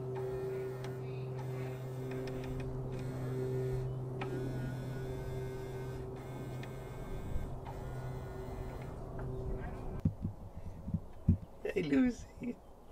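Small electric motor of a Hummer H3's passenger power mirror humming steadily, run through temporary jumper wires from the driver's-side mirror connector to test whether the fault is in the wiring. The hum shifts slightly about four seconds in and stops about ten seconds in, followed by a few short knocks.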